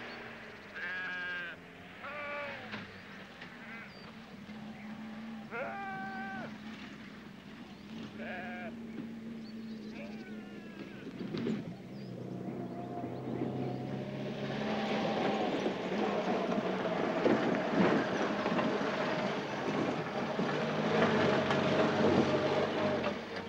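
Sheep bleating about five times over the steady hum of a car engine. From about two-thirds through, the car comes close and its engine and tyres on the dirt track grow louder.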